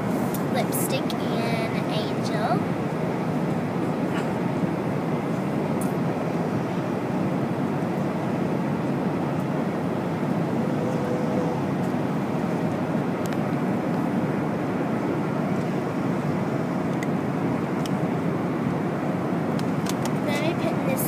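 Airliner cabin noise at cruising altitude: a steady, even rumble of engines and airflow that holds at one level throughout.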